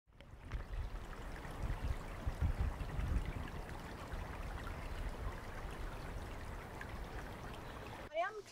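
Running water, the steady trickle of a small stream, fading in at the start, with some low rumble that is stronger two to three seconds in.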